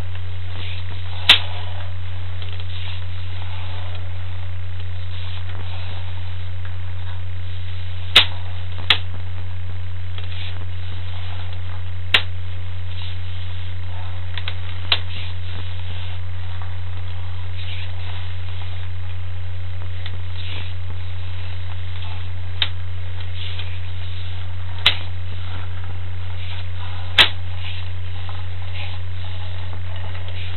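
Steady low electrical mains hum on the sewer inspection camera's recording, with a sharp click every few seconds, irregularly spaced.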